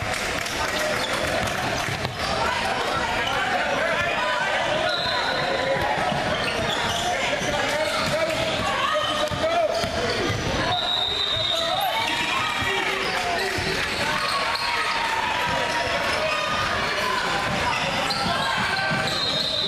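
Sounds of a basketball game echoing in a large gym: a basketball dribbled on a hardwood court, repeated knocks, under continuous indistinct chatter and calls from players and spectators.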